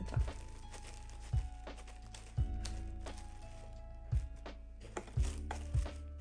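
Background music: held melodic tones stepping slowly lower over a slow beat of low thumps, roughly one a second.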